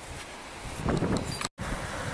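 Outdoor background noise with wind buffeting the microphone; the sound cuts out for an instant at an edit about one and a half seconds in.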